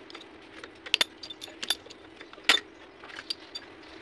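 Sharp metallic clinks and taps of hand tools and grinder parts being handled on a lathe, a handful of irregular clicks with the loudest about one second and two and a half seconds in, over a faint steady hum.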